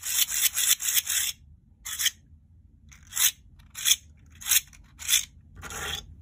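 Layered plastic star-shaped spring fidget toy being pushed and turned inside out, its thin plastic layers rasping against one another. A quick run of strokes in the first second or so, then single short rasps about every half second.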